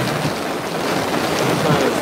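Storm rain and wind beating on a car, heard from inside the car as a steady, even rushing noise.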